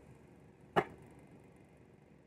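A single sharp click a little under a second in, from hands handling a tarot deck: a card or the deck tapped down. Otherwise faint room tone.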